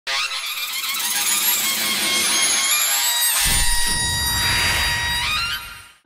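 Electronic intro sting for a logo: a rising sweep that builds for about three seconds, then a deep boom, dying away just before the end.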